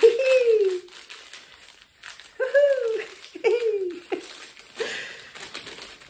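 A woman laughing, once at the start and in two more short bursts midway, while a small paper-wrapped advent calendar gift crinkles as it is unwrapped by hand.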